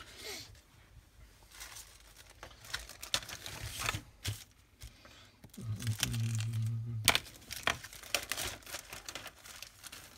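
A clear plastic bag crinkling and rustling in irregular crackles as it is torn open and a plastic model-kit sprue is drawn out of it.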